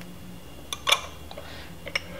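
Low steady room hum with a few light clicks, the sharpest about a second in.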